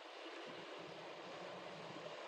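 Faint, steady low background noise with no distinct sounds.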